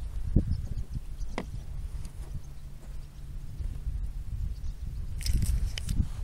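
Low rumbling and irregular thumps of handling and wind noise on a handheld camera's microphone. There is a sharp click about a second and a half in, a faint steady hum through the middle, and a short hiss near the end.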